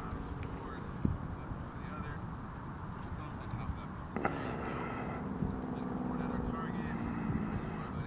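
Wind rumbling on the microphone, with indistinct voices talking; one voice comes in more clearly about four seconds in and carries on.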